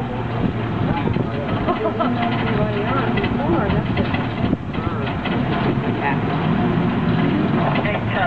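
People talking aboard a street cable car, over a steady low hum from the car and its track.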